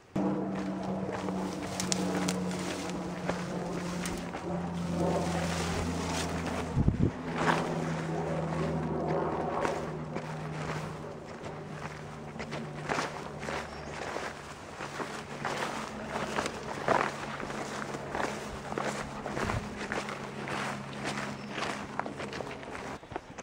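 Footsteps and rustling along a grassy dirt trail, irregular and uneven, over a low steady drone of held tones that shift in pitch a few times.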